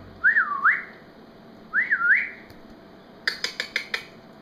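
A person whistling two short phrases, each a single pitch that rises, falls and rises again, about a second and a half apart. Near the end comes a quick run of about six sharp clicks.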